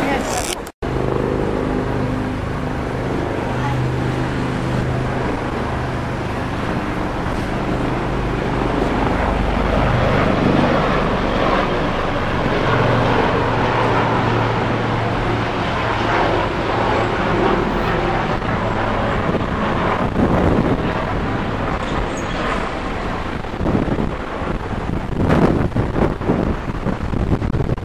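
City traffic noise with a steady engine hum and people talking in the background, broken by a brief dropout about a second in.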